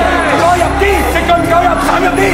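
A man shouting coaching instructions to a fighter from ringside, loud and excited, over a steady low hum.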